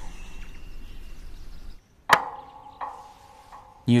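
One sharp, loud knock of a hard object about halfway through, with a short ringing tail, followed by a few faint taps. Before it, a low steady background hum cuts off abruptly.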